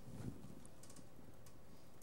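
A few faint, light key clicks on a laptop keyboard over a low room hum.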